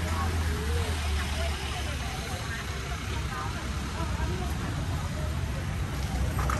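Outdoor market ambience: indistinct voices of people talking nearby over a steady low rumble, heaviest in the first second and a half.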